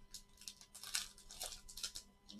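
Baseball card pack being opened by hand: dry paper rustling and crinkling as the wrapper is handled and the stack of cards slides out, in quick irregular strokes.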